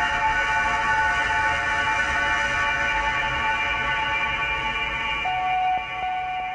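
A rock band's final chord ringing out after the last hit: sustained distorted tones with a high steady tone on top, slowly fading. About five seconds in, a new steady tone at a different pitch comes in.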